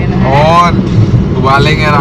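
A man singing out loud in two drawn-out phrases, over the steady low rumble of a moving car heard from inside the cabin.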